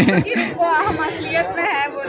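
People talking and chattering, several voices over a background of crowd noise.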